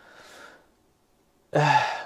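A man's audible breath in a pause between words, a short faint exhale, followed by about a second of silence before his speech starts again near the end.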